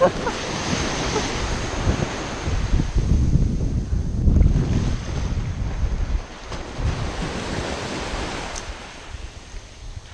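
Shallow surf washing around the wader's feet with wind buffeting the microphone. The buffeting is heaviest a few seconds in and eases toward the end.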